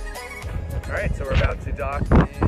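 Background music stops about half a second in. A man's voice follows: short vocal sounds with a quickly wavering pitch, like a laugh or a drawn-out exclamation, not clear words.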